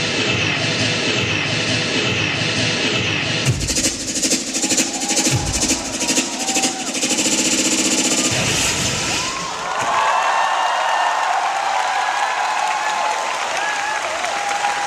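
Dance routine music with a hard beat and repeated falling sweep effects, which stops about nine and a half seconds in; a crowd then cheers loudly.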